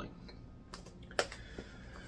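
Two or three short, faint clicks in a quiet room, the clearest about a second in.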